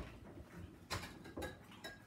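Metal cocktail shaker clinking and knocking a few times as it is handled and set on the bar after shaking. The last clink, near the end, rings briefly.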